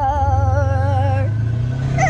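Side-by-side UTV engine pulling and speeding up, its pitch rising through the second half. Over it is a song with a sung line and steady vibrato, which breaks off partway through and comes back in at the end.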